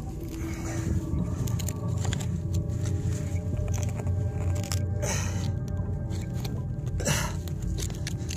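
A hand digging tool scrapes and crunches in stony soil, prying at a wedged quartz rock, with two louder scrapes about five and seven seconds in. Steady background music runs underneath.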